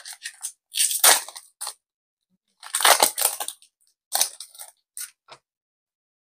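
Foil wrapper of a Digimon card game booster pack crinkling and tearing as it is pulled open by hand, in a few separate bursts of crackle.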